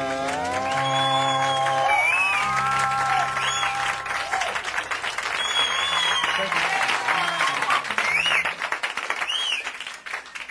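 A live country-rock band's closing chord, several held notes sliding up in pitch and ringing out over the first few seconds, while a studio audience applauds, with a few high whistles over the clapping.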